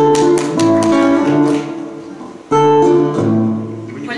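Guitar playing the opening of a song: a strummed chord at the start and another about two and a half seconds in, each left ringing.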